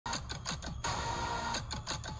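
Movie-trailer sound design: a rapid run of sharp hits, each trailing a falling low tone, broken in the middle by a held tone, with music underneath.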